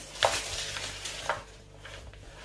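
Spatula stirring and folding thick chocolate-chip cookie dough in a plastic mixing bowl, scraping against the bowl in a few short strokes, the first the loudest.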